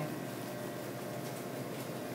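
Serrated knife sawing along a salmon's backbone, a faint crunching scrape of the blade riding on the spine bones, over steady background noise.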